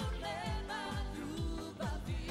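Live pop song: a woman singing with vibrato over a band with a steady kick-drum beat.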